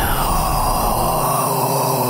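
A steady, sustained whooshing sound effect that opens with a falling sweep.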